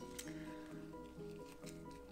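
Faint background music: held notes that step to a new pitch every half second or so.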